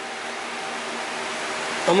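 Steady, even hiss of background noise with no distinct events in it.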